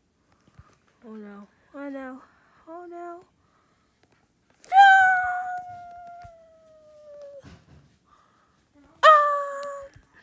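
A child's wordless vocalizing: three short sung notes, each higher than the last, then a long, loud high-pitched squeal that sinks slowly in pitch, and a second loud squeal near the end.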